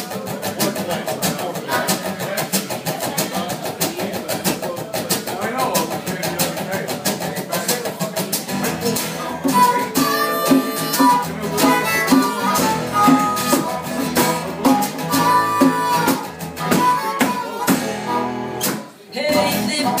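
Acoustic guitar strumming with a djembe keeping the beat, an instrumental intro for a song. From about halfway through, a harmonica plays a bending lead line over them.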